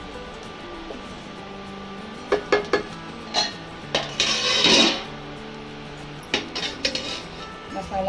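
A wooden spatula stirring and scraping thin masala gravy in a steel kadai, with a few sharp knocks against the pan about two seconds in, a longer scrape around the middle and more knocks near the end.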